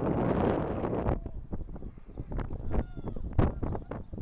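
Wind buffeting an outdoor microphone, loudest in the first second, followed by scattered short knocks and faint distant calls across the field.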